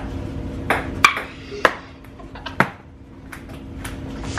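Table tennis ball clicking off paddles and the table in a rally: four sharp hits spaced roughly half a second apart, then a few lighter taps near the end, over a steady low hum.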